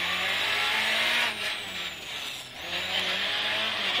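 Rally car engine and road noise heard from inside the cabin. The revs drop as the car slows for a tight right-hand bend, with the quietest point about two and a half seconds in, then pick up again toward the end.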